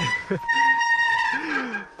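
A sustained high squealing tone with overtones, slowly falling in pitch and fading near the end, over a person's low groans and exclamations.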